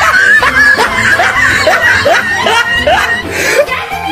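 Laughter: a run of short, rising 'ha' sounds, about two or three a second.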